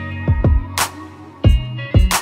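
Background music with a steady beat: deep kick-drum thumps and sharp snare hits over held chords.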